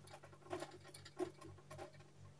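Marker pen writing on a whiteboard: short scratchy strokes, several a second, as letters are drawn. A low steady hum sits under them.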